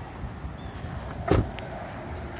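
A single dull thump a little past halfway, over steady outdoor background noise.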